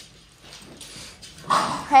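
Small dogs play-wrestling on a laminate floor: faint scuffling and claw clicks, then a sudden loud outburst from one of the dogs about one and a half seconds in.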